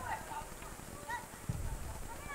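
Distant shouting and calls from players and spectators around an outdoor football pitch, over a steady open-air background, with a dull low thump about one and a half seconds in.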